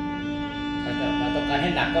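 Violin playing one long, steady bowed note, with the player's arm weight pressed into the bow for a fuller tone.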